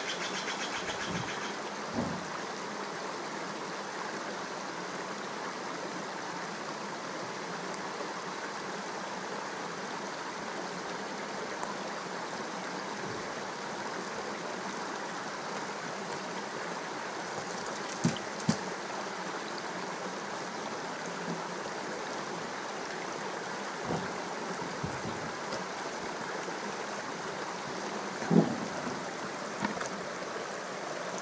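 Steady rushing background noise throughout, with a few scattered short knocks; the loudest knock comes near the end.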